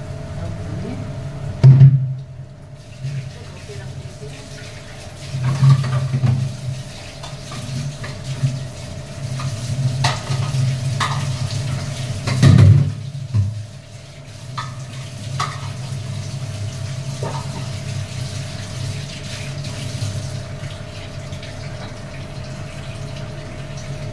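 Kitchen tap water running into a sink while steel utensils are rinsed, with clanks of metal on metal, the loudest about two seconds in and about twelve and a half seconds in. A steady hum runs underneath.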